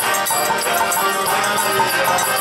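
Kirtan music without singing: a harmonium and a violin play a steady melody, and hand percussion jingles along.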